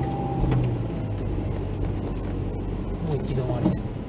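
A car's engine and road noise heard from inside the cabin as it pulls away from a stop and gathers speed, a steady low hum throughout.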